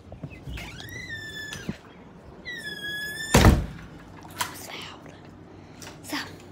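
A door's hinges squealing twice as it swings, then the door shutting with a loud thud a little over three seconds in.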